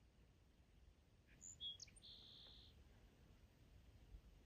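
Near silence outdoors with a faint low rumble, broken in the middle by a brief bird call: a few short high chirps and then one thin, held high note.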